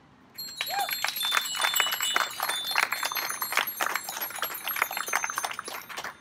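A crowd clapping and ringing many bicycle bells together, starting about half a second in and easing off near the end.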